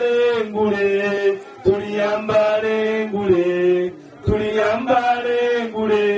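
A group of voices chanting in unison, long held notes broken by short pauses about a second and a half in and again near four seconds.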